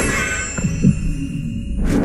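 Animated-film action soundtrack: dark music with a few low thuds about a third of a second apart and a high ringing tone fading over the first second. A sudden loud rush of noise comes in near the end.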